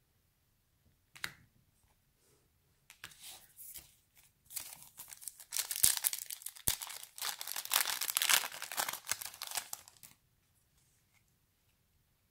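Foil trading-card pack wrapper being torn open and crinkled, a dense crackling from about three seconds in until about ten seconds in. A short tick about a second in.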